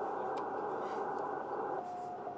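Receiver audio from an Icom IC-7300 HF transceiver in CW mode: hiss of band noise through the narrow receive filter, with a faint steady tone. Near the end a louder Morse tone at the same pitch comes in.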